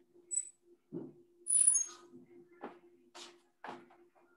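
Faint scattered rustles and clicks over a steady low hum, with a louder hissing rustle about a second and a half in.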